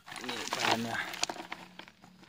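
A man's brief, unclear voice over crinkling and rustling handling noise in the first second or so, fading to a few small clicks.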